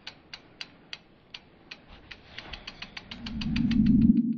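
Sound effects for an animated logo reveal: a run of sharp ticks, about three a second at first, speeding up to several a second in the second half. A low swell builds under them over the last second.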